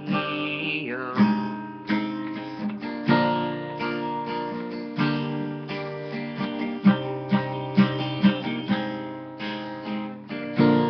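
Acoustic guitar strummed in chords, the chords changing every second or two, with sharper accented strokes in the later part.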